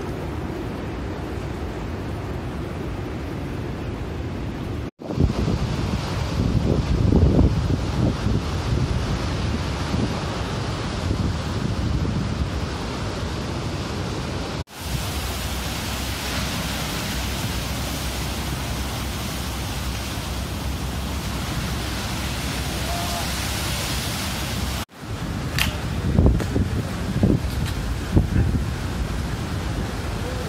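Rough storm surf breaking and hissing in the wake of a typhoon, with strong gusty wind. In two stretches the gusts buffet the microphone as low rumbles. The sound drops out briefly three times.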